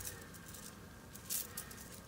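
Faint rustling of a bundle of ribbon jumper wires being handled among loose jumper wires, with a small click about two-thirds of the way in.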